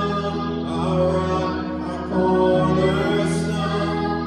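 A man singing a slow song, accompanied by sustained chords on a Yamaha MX88 electric keyboard; the music swells about two seconds in.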